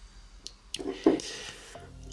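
Two faint clicks about half a second in, then soft handling noise as fingers pull a cotton wick through the coils of a rebuildable dripping atomizer.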